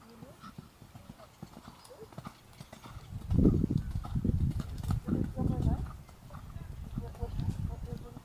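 Hoofbeats of a Thoroughbred horse trotting on arena dirt, loudest for a few seconds in the middle as it passes close by, with voices in the background.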